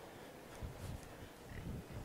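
Horse's hooves striking soft arena dirt: faint, dull thuds in an uneven rhythm that begin about half a second in and grow stronger in the second half.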